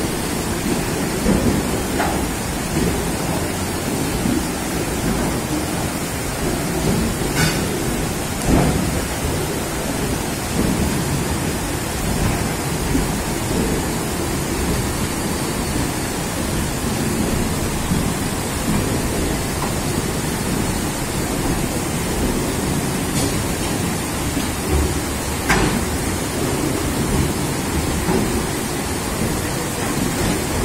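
Floodwater rushing and splashing around the wheels of freight wagons rolling through it: a steady low rumbling wash, with a few brief knocks.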